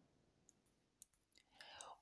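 Near silence, with a faint click about a second in and a faint soft sound just before the end.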